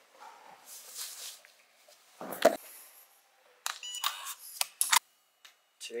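A loud thump about two seconds in, then a quick run of short electronic beeps and clicks.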